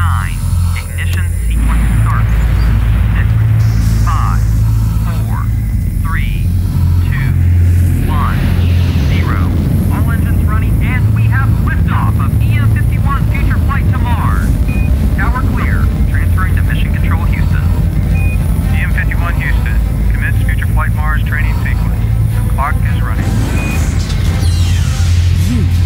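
Rocket launch rumble: a heavy, steady low roar of the engines at liftoff and climb, swelling about a second and a half in. Over it runs mission-control-style radio voice chatter, punctuated by a few short beeps.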